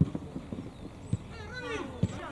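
Football match play on a grass pitch: three dull thumps, one at the start, one about a second in and one at the very end, with a shout from a voice on the field near the end.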